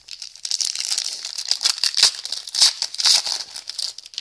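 Foil wrapper of an O-Pee-Chee Platinum hockey card pack crinkling as it is handled and torn open: a dense run of crackles that stops just before the end.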